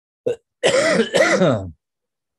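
A man clearing his throat in two quick pushes lasting about a second, just after a short spoken word.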